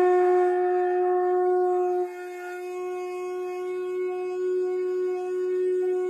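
Conch shell (shankh) blown in one long, steady note. It sounds loud for about two seconds, then drops suddenly to a softer level and wavers slightly as it is held on.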